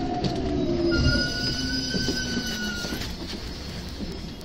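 Electric commuter train braking to a stop at a platform, heard from inside the car: the motor whine falls in pitch as it slows, and about a second in a steady high-pitched brake squeal sets in and lasts about two seconds.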